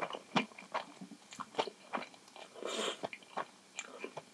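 Close-miked mouth sounds of someone eating instant ramen noodles: wet chewing with irregular sharp clicks. A short slurp of noodles comes a little before the end.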